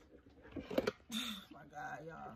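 Faint, indistinct voice with a few light knocks of the phone being handled.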